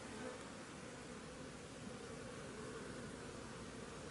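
Faint, steady buzzing of many honeybees in a robbing frenzy, as robber bees attack the hives and the colonies fight them off.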